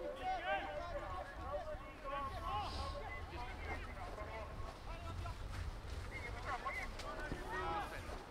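Distant, unintelligible shouts and calls of football players across the pitch, coming in short scattered bursts. A low rumble of wind on the microphone runs underneath.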